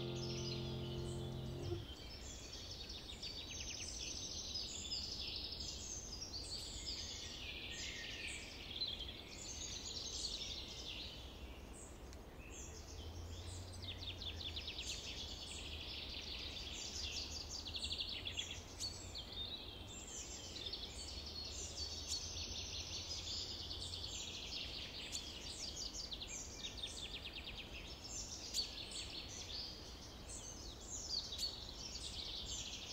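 Many songbirds singing together, overlapping chirps and rapid trills throughout, with a held piano chord dying away in the first two seconds.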